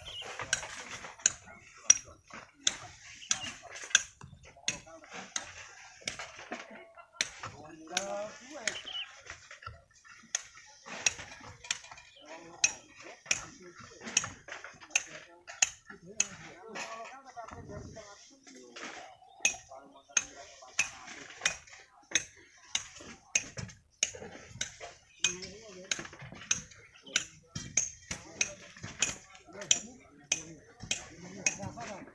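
Repeated sharp, metallic clinks of a hammer striking stone, about two a second, with faint voices underneath.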